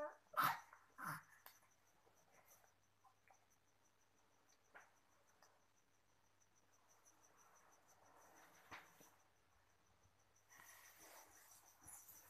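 A young baby's short coos and squeals in the first second or so, then near silence with a few faint rustles.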